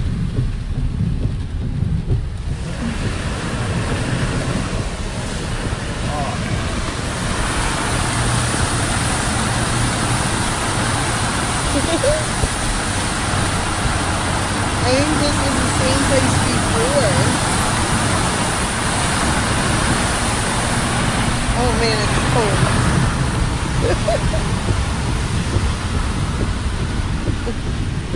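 Truck driving through deep floodwater in heavy rain: water spraying and rushing against the underside, a loud steady wash over the low rumble of the road. It builds up sharply about two to three seconds in.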